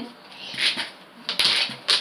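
Small hard objects clicking and clinking as they are handled, with two sharp clicks about half a second apart near the end.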